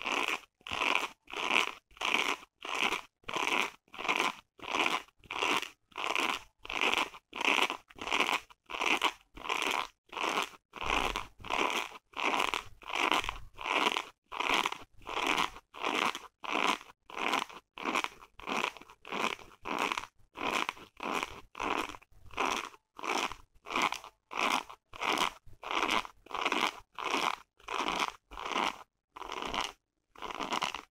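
Long fingernails scratching the textured woven-fabric surface of a small pouch in a steady, even rhythm of about two strokes a second, a dry, crisp scratching sound.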